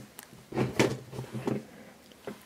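Lunchbox being pulled out and handled: a click, then about a second of rubbing and scraping that fades away.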